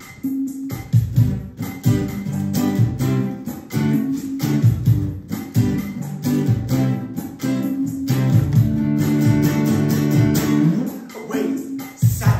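Acoustic guitar strummed in a steady rhythm of chords, an instrumental passage of a song with no singing.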